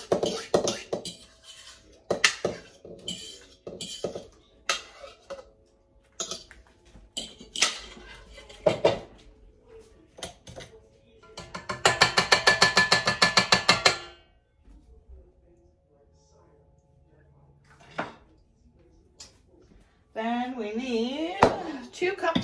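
Clatter and knocks of a ceramic bowl and utensils against a stainless-steel mixer bowl, then about halfway through a hand whisk beaten fast against the steel bowl for about two seconds, a rapid run of metallic clinks that is the loudest part. A voice is heard near the end.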